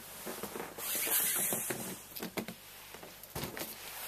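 A large cardboard shipping box being handled onto a desk: irregular rustling and scraping, a brief louder scuff about a second in, and a few light knocks near the end.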